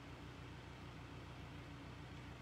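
Near silence: faint steady room tone, a low hum with hiss.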